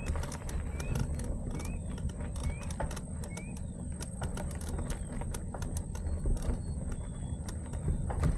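Mountain bike riding over a rough dirt embankment path: a steady low rumble with many sharp rattling clicks from the bike over the bumps. In the first half, a short rising chirp repeats about once a second.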